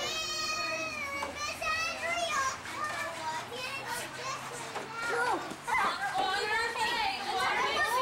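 Young children's voices chattering and calling out as they play together, with a long high-pitched call in the first second.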